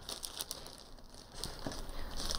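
Gold metallic wrapping paper crinkling and rustling irregularly as a gift is unwrapped by hand, fairly quiet.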